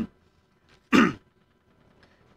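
A man clearing his throat once, a short rough burst about a second in that falls in pitch.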